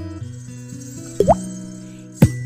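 Looped beatbox music made with the voice: layered held bass notes, with a quick, sharply rising pop about a second and a quarter in.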